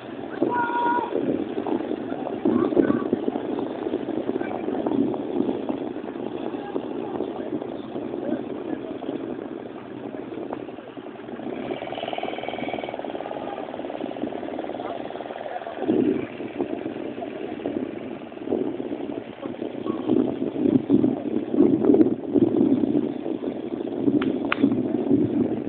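Indistinct background voices mixed with the low, uneven hum of distant outboard motors on inflatable powerboats. A brief higher-pitched engine note rises out of it about twelve seconds in.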